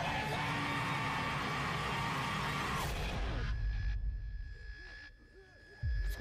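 Zombie-trailer soundtrack: a loud, chaotic mix with a long held yell over music for about three seconds, then a sudden drop to a quieter passage with a steady high musical tone.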